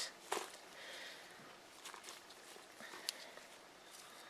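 Faint rustling of a worm bin's bedding of castings, shredded leaves and paper as a gloved hand works through it, with a couple of soft clicks.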